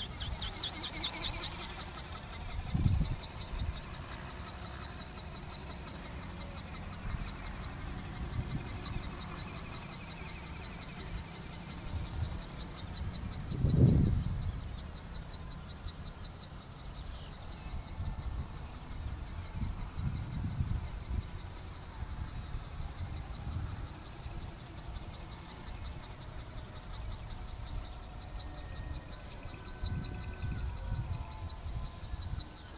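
Steady high-pitched insect buzzing in a rapid pulse, with gusts of wind rumbling on the microphone, the strongest about 14 seconds in.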